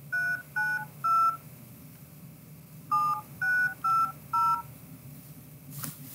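Telephone keypad touch-tones (DTMF): three quick two-note beeps, a pause of about a second and a half, then four more.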